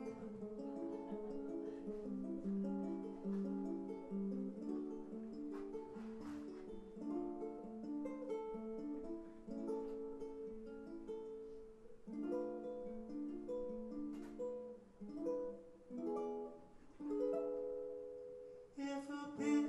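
Ukulele picking out a melody of short plucked notes, backed by a small live band with a few sharp cajon knocks, as an instrumental lead-in to a song.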